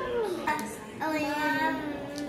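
A young child singing one held note for about a second, after a short downward sliding vocal sound at the start.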